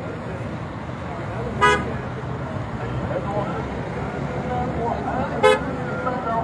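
Two short car-horn toots, one about a second and a half in and another near the end, over the voices of a crowd.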